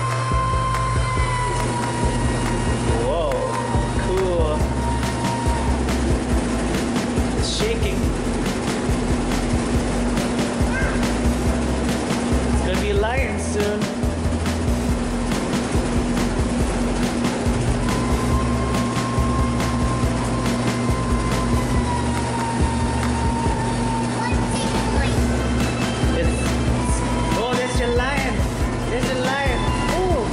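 Music with sustained tones over a shifting bass line, with voices in the background.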